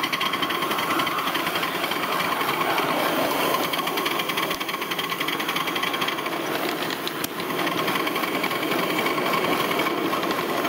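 Metre Maid miniature steam locomotive running along the track, its exhaust beats and running gear keeping up a fast, even rhythm, with wheels on the rails. There is a brief dip and a click about seven seconds in.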